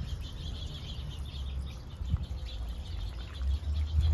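Small birds chirping faintly and repeatedly over a steady low rumble.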